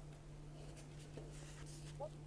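Faint scraping and rustling of hands opening a glitter-covered box and sliding a card out of it, over a low steady hum.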